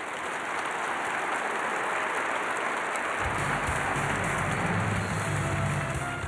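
Large audience applauding in a hall, with music carrying a low bass line coming in about three seconds in over the clapping.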